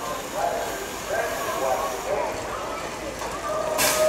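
Voices over the start area, then near the end the BMX start gate's long final tone sounds. The metal start gate clangs down a moment later as the race starts.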